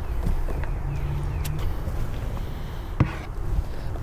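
A gloved hand working into dry peat moss in a plastic bin: a soft rustle with a few sharp knocks, the loudest about three seconds in, over a steady low rumble.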